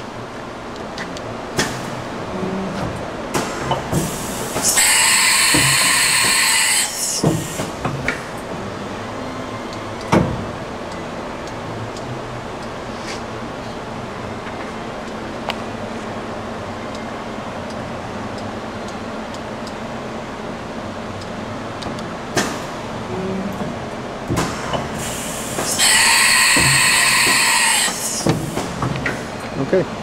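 Amera Seiki MC-1624 vertical machining center doing tool changes: clunks and clicks of the tool changer and spindle over the machine's steady hum. Twice, about 20 seconds apart, there is a loud hiss of compressed air lasting a couple of seconds as the spindle releases and reseats the tool.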